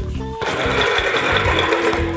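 Plastic wheels of a large ride-along Thomas toy case rolling across a wooden floor as it is pushed, a loud whirring rattle that starts about half a second in.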